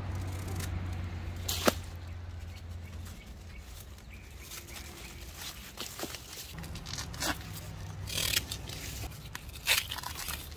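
Hand pruners snipping through old white ginger stalks at ground level, a few sharp clicks spaced out, the loudest about two seconds in and more in the last few seconds, with rustling of the cut stems and dry leaves.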